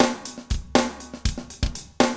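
KitCore Deluxe software acoustic drum kit playing back a funk drum groove in a steady rhythm, about four hits a second.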